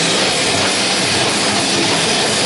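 Live heavy rock band playing loud: electric guitars and a drum kit in a dense, unbroken wash of sound.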